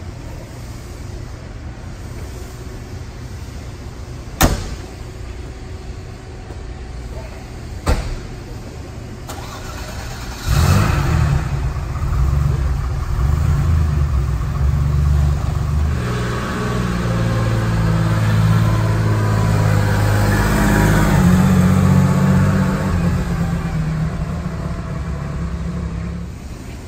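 Porsche 959's twin-turbo flat-six starting suddenly about ten seconds in, then idling, its pitch and loudness rising for a few seconds and easing off again near the end. Two sharp clicks come before the start.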